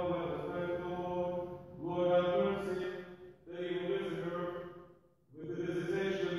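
A single voice chanting Orthodox liturgical prayers on a nearly steady reciting pitch, in long phrases with short breaks for breath about two, three and a half, and five seconds in.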